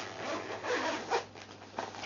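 Zip on a fabric Smiggle pencil case pulled open in a few short strokes, with rubbing of the case's fabric as it is handled.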